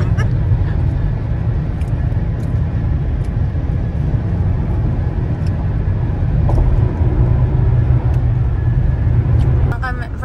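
Steady road and engine rumble inside a car's cabin at highway speed. A woman's voice starts just before the end.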